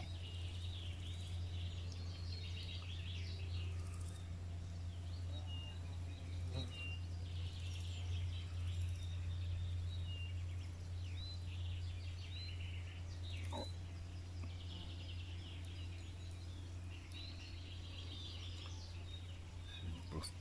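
Small birds chirping and trilling in short, scattered calls over a steady low hum, with a single faint click a little past halfway.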